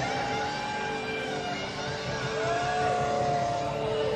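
Live rock concert sound: long held instrument tones that slide up and back down in pitch over a steady held note and a wash of crowd and amplifier noise.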